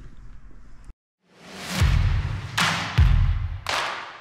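Cinematic end-card sound effects: after a brief silence, a rising whoosh swells into a series of deep booming hits.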